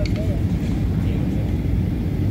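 Steady low rumble of an aircraft in flight, engine and air noise, with faint voices in it.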